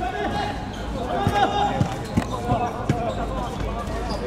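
Men's voices calling out across a football pitch, with a run of five short dull thuds of a football being played on artificial turf, spaced roughly every half second from about a second in.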